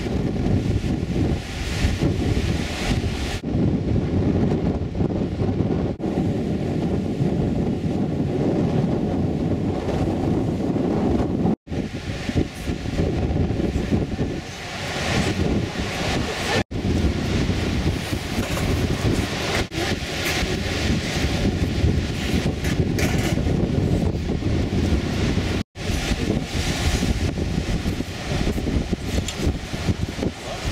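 Wind buffeting the microphone: a loud, gusting rumble, broken three times by a split-second dropout.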